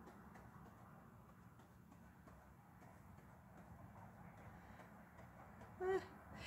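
Near silence: faint room hum with faint soft ticks and scrapes of a flat brush mixing acrylic paint on a paper plate.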